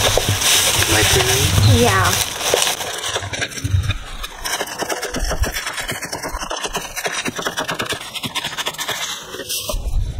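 Chef's knife chopping green onions on a wooden cutting board: a quick, steady run of knocks from about three seconds in. Before that, in the first two seconds, a short vocal sound rides over louder rustling.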